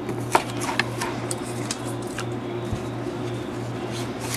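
Paracord knot being worked off a PVC pipe by hand: scattered small clicks and rubbing of cord against plastic, over a steady low hum.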